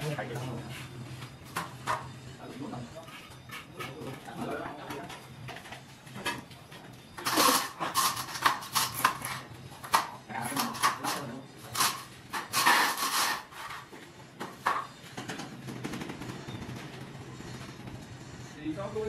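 Hand tools scraping and knocking on ceramic floor tiles and mortar during tile laying, with a dense run of rapid, loud scrapes in the middle. Men's voices are heard briefly now and then.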